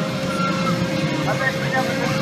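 Carnival midway noise: a steady mechanical drone from the running rides, mixed with people's voices and calls.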